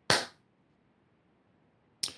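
A short, sharp sound right at the start that dies away within about a third of a second, then near silence, with another brief sharp sound at the very end.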